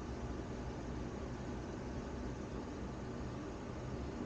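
Steady, even hiss of room tone with no distinct sounds standing out.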